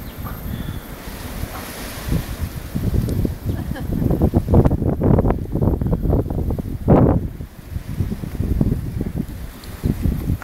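Wind buffeting the microphone in irregular low rumbling gusts, heaviest in the second half, with one strong gust about seven seconds in.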